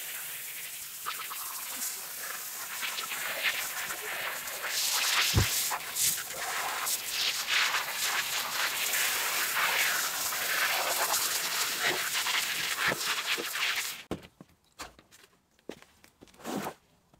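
Wet wool rug being scrubbed by hand with a brush: a continuous, uneven rasping that stops abruptly about 14 seconds in, followed by a few light knocks.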